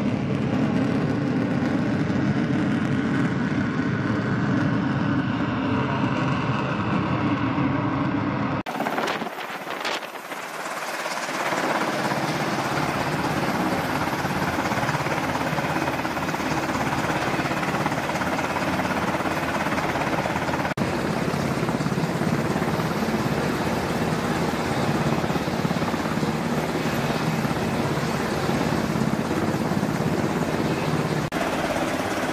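Steady aircraft engine noise on a carrier flight deck. About nine seconds in the sound cuts, dips briefly, and then gives way to an MH-60 Seahawk helicopter running on deck with its rotors turning, its turbine and rotor noise steady.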